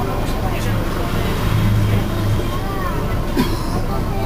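Commuter train running along the track: a steady low rumble and hum, with a brief clack about three and a half seconds in. Indistinct voices are heard over it.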